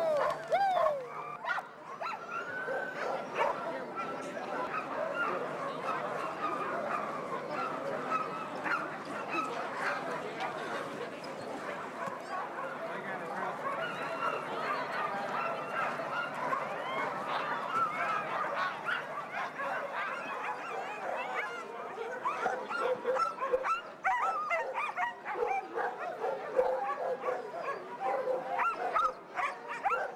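A chorus of many sled dogs barking and yipping together without a break, growing louder and more uneven in the last several seconds.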